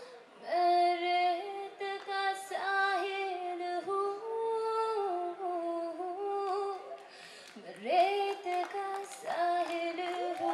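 A woman singing solo into a stage microphone, amplified over the PA, holding long ornamented notes that glide between pitches, with a short break about seven seconds in.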